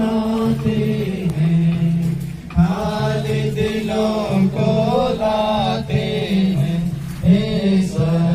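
Congregation singing a Christian hymn together, a slow melody with long held notes.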